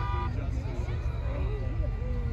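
A horn blast with several steady tones that cuts off about a quarter of a second in, over a steady low rumble, with faint voices in the background.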